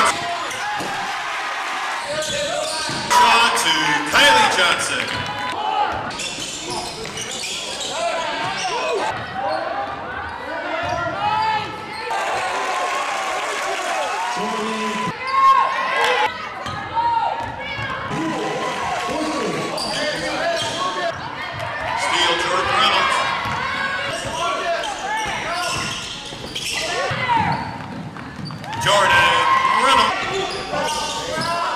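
Basketball game sounds in an echoing gym: a ball bouncing on the court, short high squeaks and indistinct voices, with louder bursts about three seconds in, near the middle and near the end.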